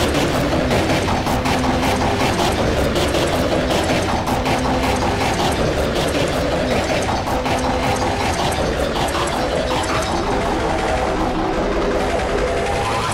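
A dense, loud jumble of many logo soundtracks playing over one another: overlapping music and sound effects cluttered with rapid clicks and ratchety mechanical noise.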